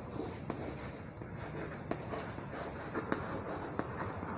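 Chalk scratching on a blackboard as a word is written by hand, with a few sharp taps of the chalk against the board.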